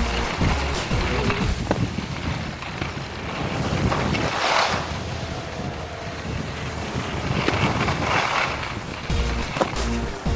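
Wind rushing over the microphone and the hiss of skis sliding on snow during a downhill run, swelling twice in the middle, under background music.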